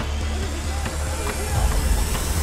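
Trailer score: a heavy low drone under a rising swell of hissing noise that climbs and grows louder, building tension.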